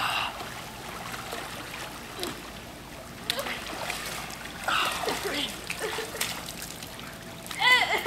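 Pool water splashing and sloshing as a swimmer moves through it and climbs out over the stone edge, with short vocal sounds from him around the middle and near the end.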